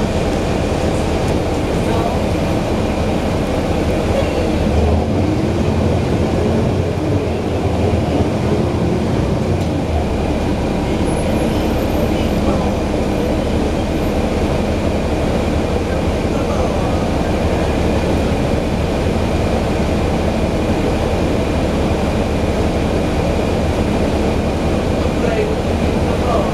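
Rear-mounted Cummins ISL diesel engine of a 2011 NABI 416.15 transit bus running steadily, heard from inside the back of the cabin as a loud, constant rumble with a thin steady whine above it. Its low rumble shifts for a few seconds near the start.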